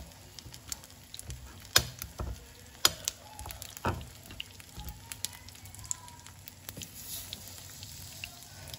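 Egg-coated tikoy (sticky rice cake) slices frying in oil in a nonstick pan over low heat: a quiet, steady sizzle with scattered sharp pops and clicks, the loudest about two, three and four seconds in.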